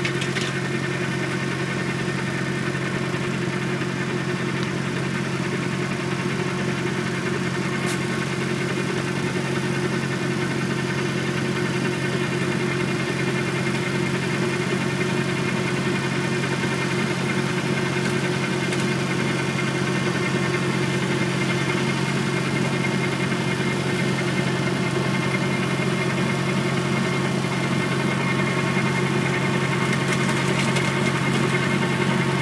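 Small tractor's engine running steadily under load, driving an AGR Leopar 10 flail mulcher through pruned orchard branches. The sound grows slightly louder near the end, with a faint single click about eight seconds in.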